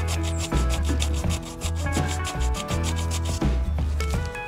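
Sandpaper rubbed by hand over cured Bondo body filler on a wooden door frame, in quick, even back-and-forth strokes that stop shortly before the end. The filler has hardened and is being smoothed.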